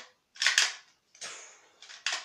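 Pump-action slide of a Lego toy shotgun being racked back and forth: three rattly plastic clacks of Lego bricks sliding and knocking together, about two-thirds of a second apart.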